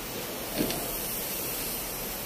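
Compressed-air spray gun hissing steadily as it sprays the final colour coat onto a car bonnet.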